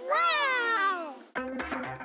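A child's voice calling out in one long call that slides down in pitch. It stops about a second and a half in, and music with clicking wood-block percussion begins.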